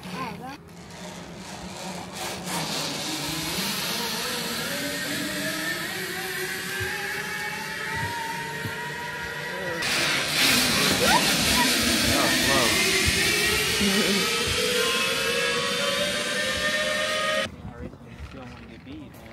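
Zip-line trolley running along a steel cable: a steady whirring hiss with a whine that rises slowly in pitch. It breaks off suddenly about halfway, then starts again and rises once more, cutting off just before the end.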